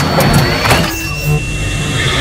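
Electronic sound effects for an animated logo intro: glitchy digital noise and clicks over a low pulse, with a thin high beep held through the first second, then a slightly lower beep.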